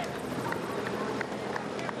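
Steady outdoor roadside ambience of a bike race: an even hiss with a few faint light clicks.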